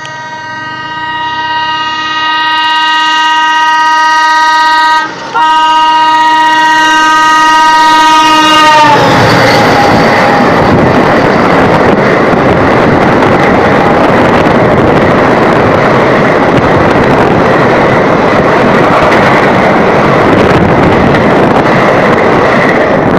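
Ganga Gomti Express passing on the adjacent track. Its locomotive horn sounds a long multi-tone blast that grows louder as it approaches, with a brief break about five seconds in. The horn's pitch drops slightly as the engine goes by, and then the coaches rush past close by with a loud, steady rumbling clatter for the rest.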